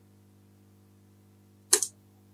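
Near silence with a faint steady hum, broken near the end by one short, hissy intake of breath before speech resumes.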